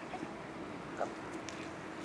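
Faint, steady outdoor background with a short spoken call about a second in; no other distinct sound.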